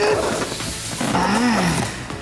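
Styrofoam packing block scraping and rubbing against its cardboard box as it is hauled out, with one low groan that rises and falls in pitch about a second and a half in, from the strain of lifting the heavy load.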